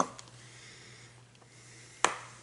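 Quiet room tone with a steady low electrical hum. At the very start there is a single knock as the shaking of a plastic mustard squeeze bottle stops, and at the very end a sharp click.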